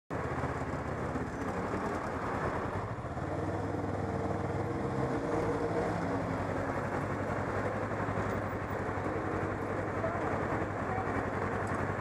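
Motorcycle engine running at low speed in slow city traffic, with steady wind and road noise on the helmet-mounted microphone.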